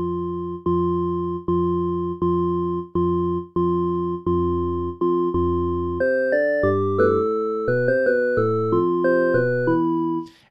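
Bitwig FM-4 synthesizer used as an additive synth: sine-wave partials set to whole-number ratios (half, one, two and six times the fundamental) give a consonant, organ-like tone. The same note is struck about eight times, each fading quickly, then about six seconds in a faster line of changing notes follows.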